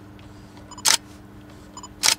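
Digital SLR fitted with a Sigma 24-70mm F2.8 HSM zoom: a short electronic beep, the autofocus-confirmation tone, then the loud click of the shutter firing about a second in. A second beep comes near the end, as the camera locks focus for the next shot.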